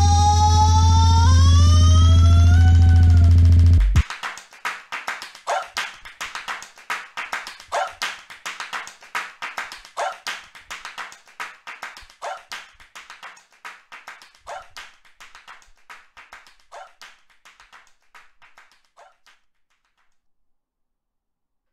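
Live-looped electronic track ending: a loud held synth chord over heavy bass with its pitch bending upward, cut off abruptly about four seconds in. It is followed by a stuttering echo tail of short clicky sounds, louder about once a second, that fades out over some fifteen seconds.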